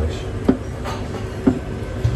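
Steady low background rumble with two sharp knocks about a second apart.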